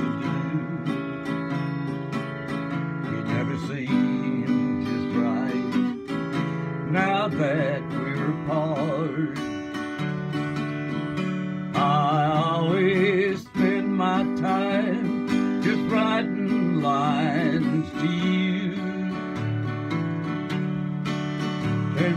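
A man singing a slow country ballad with a wavering vibrato, accompanied by a strummed acoustic guitar.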